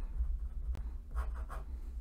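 Pen writing on paper, a word written out and then underlined in short scratchy strokes, with a single sharp tick a little under a second in. A steady low hum sits underneath.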